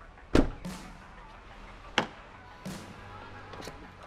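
Cab doors of a Ford F650 crew-cab truck being worked by hand: a heavy thud shortly after the start, lighter knocks, then a sharp latch click about two seconds in as a rear door is opened.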